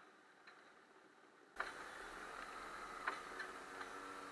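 Faint, muffled go-kart engine running on track, heard through an onboard action camera. It cuts in abruptly about one and a half seconds in after a much quieter stretch, with a few light clicks over it.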